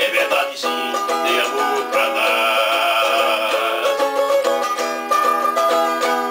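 Small acoustic string instrument strummed in chords with a steady, quick rhythm.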